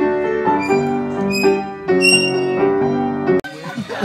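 Upright piano being played: chords of held notes that change every half second or so, cutting off suddenly about three and a half seconds in.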